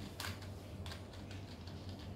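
Plastic twisty puzzle being turned quickly by hand, a run of light plastic clicks and clacks with two louder clacks near the start and about a second in, over a low steady hum.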